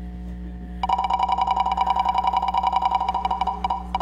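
Game-show spinning-wheel sound effect: rapid clicking ticks, about ten a second, with a ringing tone. It starts about a second in and thins to a last few ticks near the end as the wheel comes to a stop.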